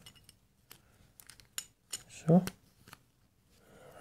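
Scattered small sharp clicks and taps from handling the plastic case of a COB LED carabiner light while the LED board with its wires is fitted back into it.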